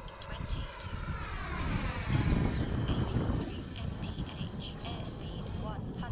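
Twin Jetfan 110 electric ducted fans of a 1:8 Skymaster F-18 RC jet whining in a fast pass overhead, with a rush of air noise. The whine drops in pitch as the jet goes by, with the sharpest fall about two and a half seconds in, and it is loudest at about two seconds.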